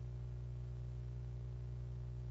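A steady low electrical hum from the chamber's microphone and sound system, with no other sound.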